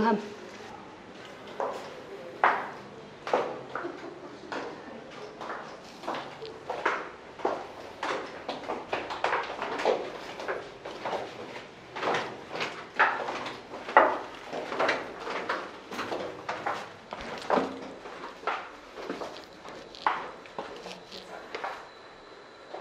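Footsteps going down concrete stairs and along a bunker passage, an irregular string of short knocks about one to two a second, echoing off the narrow concrete walls.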